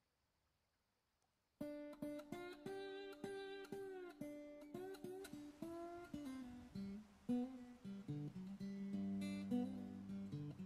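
Near silence for about a second and a half, then background music starts: an acoustic guitar, plucked and strummed, with notes that slide up and down in pitch.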